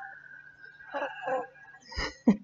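A woman doing ujjayi breath: a slow exhale through a constricted throat, a breathy hiss that tails off early, then a short voiced breath about a second in and a quick breath near the end.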